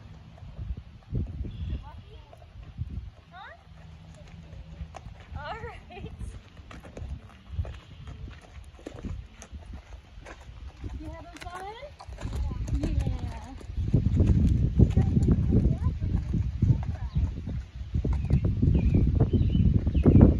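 Horse walking on sandy dirt, dull hoof thuds, with faint voices. About twelve seconds in, a much louder low buffeting rumble takes over.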